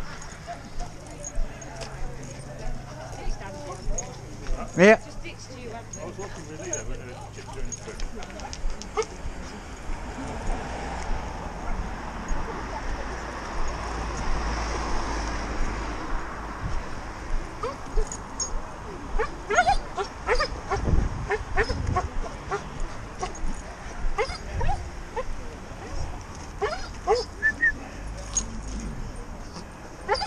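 Several dogs barking, yipping and whining in short calls throughout, with indistinct voices. A swell of steady road noise comes in the middle.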